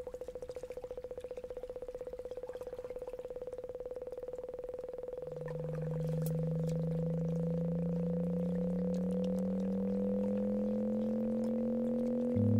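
Synthesized sonification tones from the Sonic Kayak: a steady mid-pitched tone pulsing rapidly. About five seconds in, a lower, louder tone joins it and slowly rises in pitch.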